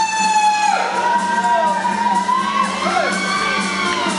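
Whooping voices: one long, high cry glides up and is held for about two and a half seconds, with shorter gliding cries and cheering around it, over music.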